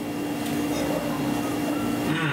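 A steady hum holding one constant tone over a background of even noise.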